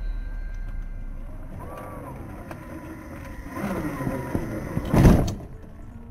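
RC scale crawler's brushless motor and geared drivetrain working the truck up against a rock, with a whine that rises and falls in pitch. A loud burst of noise comes about five seconds in.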